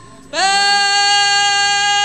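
A sinden's voice sung into a microphone: after a brief pause for breath she slides up into one long, steady held note without vibrato.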